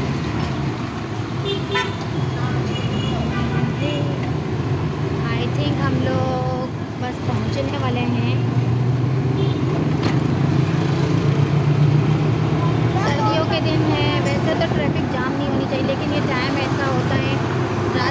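Auto-rickshaw engine running steadily in heavy traffic, with the hum swelling in the middle, horns tooting and voices around it.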